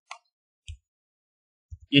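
A few faint short clicks in an otherwise quiet pause, spaced unevenly across the two seconds.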